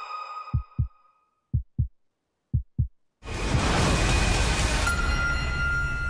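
Film-trailer sound design: music rings away, then three pairs of low heartbeat-like thumps in near silence, one pair a second. About three seconds in, a sudden loud, dense blast of noise with held high tones starts and carries on.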